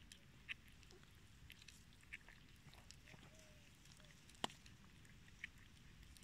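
Cat eating raw meat from a steel bowl: faint, scattered clicks of chewing, with one sharper click a little after four seconds in.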